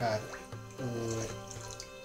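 Water being poured from a bowl into an empty saucepan, with background music.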